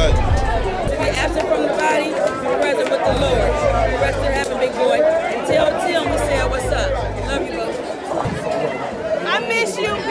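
Voices and crowd chatter in a large hall over background music, whose deep bass comes and goes in stretches of a second or so.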